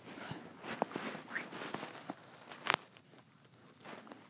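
Small scrapes and light plastic clicks of a die-cast toy car being pushed along and onto a plastic toy car-carrier trailer, with one sharper click about two-thirds of the way through.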